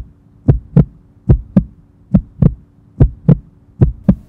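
Heartbeat-like soundtrack pulse: deep double thumps, lub-dub, about one pair every 0.8 seconds, over a faint steady hum.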